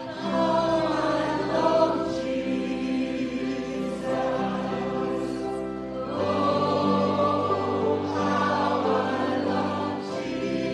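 Church choir singing a slow hymn together, over held low bass notes that change about six seconds in.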